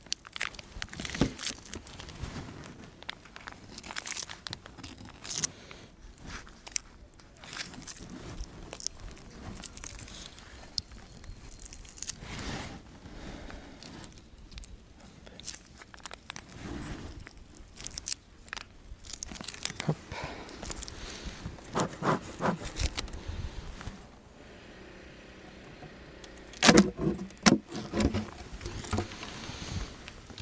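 Steel hive tool scraping and cutting into a plastic-wrapped block of bee fondant (candi), with crackling of the wrapping and small irregular clicks and scrapes. A few louder knocks come near the end, as wooden hive parts are handled to open a hive.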